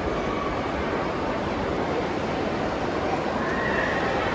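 Indoor shopping-mall ambience: a steady, echoing wash of crowd and hall noise, with a brief high-pitched call rising and falling near the end.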